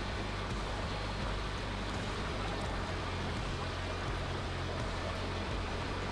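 Steady rush of a shallow river flowing over stones, with a low rumble underneath.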